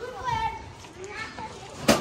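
Children's voices calling and chattering, with one sharp click near the end.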